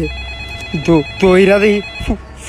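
A mobile phone ringing: its ringtone sounds as several steady high tones held together.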